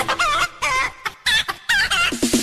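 Chicken-like clucking: five or six short, wavering calls in quick succession.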